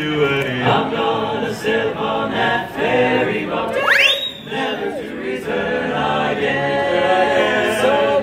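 Male barbershop quartet singing a cappella in close four-part harmony, tenor, lead, baritone and bass holding chords. About halfway through, a quick sharp rising glide shoots up over the chord.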